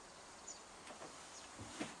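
Quiet room tone with a few faint, brief high chirps, then a spoken "yeah" near the end.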